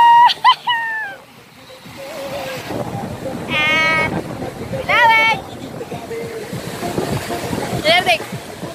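Sea surf washing up over the sand, with a loud high-pitched human squeal that breaks off about a second in. Two shorter voiced cries follow around the middle.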